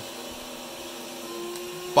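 Home-built CNC router running steadily, its router spindle cutting a piece of ash. A thin steady tone joins the even machine noise over halfway through.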